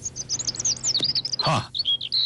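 Small birds chirping in quick, high twittering runs, with a louder short sound sliding down in pitch about one and a half seconds in, then a few more high chirps.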